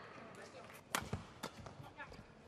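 Quiet badminton court between rallies: one sharp tap about a second in, with a few fainter taps and knocks from the players, shuttlecock and shoes on the court.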